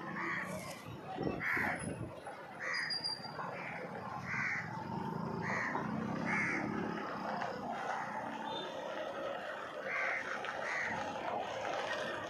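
Crows cawing: a string of short, separate caws about once a second, a pause, then two more near the end.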